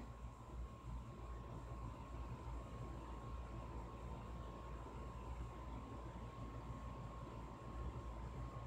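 Quiet, steady room tone: a low hum with a faint constant high whine, and no distinct events.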